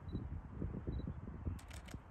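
Low, uneven rumble of wind on the microphone, with a quick run of sharp clicks near the end.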